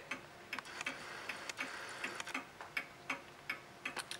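Late-1920s Sessions Berkeley tambour mantel clock ticking: a loud, quick, steady tick from its mechanical movement.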